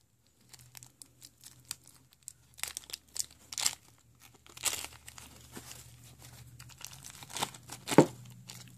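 Thin plastic bag being crinkled and torn open by hand: irregular crackling with several louder crinkles spread through, as the bag is pulled apart to free a ring.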